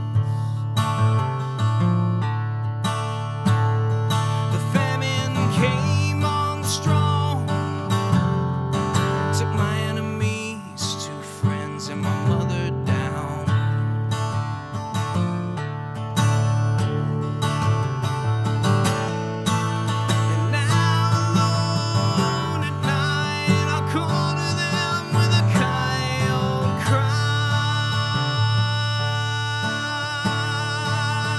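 Steel-string acoustic guitar strummed in a steady country-folk rhythm, an instrumental passage of chords.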